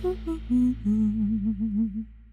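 Talk-show title jingle: a melody stepping downward over held low notes, then a wavering, warbling tone that cuts off at the end.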